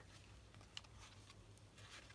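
Near silence: faint handling of paper journal pages being turned, with one small tick just under a second in.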